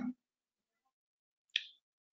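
Near silence with a single short, sharp click about one and a half seconds in.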